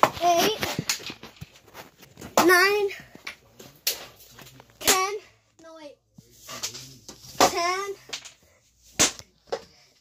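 A child's voice calling out in short, excited bursts several times, with sharp knocks and clacks in between.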